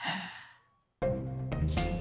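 A man's breathy gasp, fading out within half a second, then a brief silence before background music starts about a second in.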